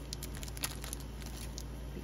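Faint light clicks and rustles of planner-insert packaging being handled, over a steady low hum.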